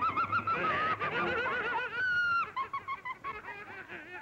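A cartoon boy's high-pitched, warbling laughter, a quick string of ha-ha-ha notes, with one held squeal about two seconds in and shorter chuckles after it.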